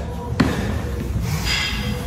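A single sharp thud of a medicine ball about half a second in, during a medicine-ball workout in a gym, followed by a brief rustling noise near the end.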